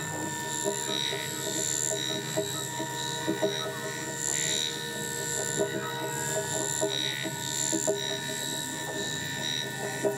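Experimental electronic drone music from synthesizers: thin high tones that switch on and off in short, irregular stretches over a dense, crackling lower layer, with scattered sharp clicks.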